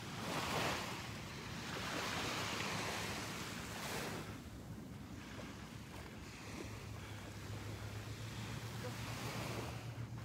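Small waves washing on the shore and wind, with wind noise on the microphone; the rush swells and eases a few times.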